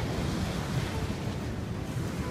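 Steady wash of surf at the shoreline, with wind buffeting the microphone.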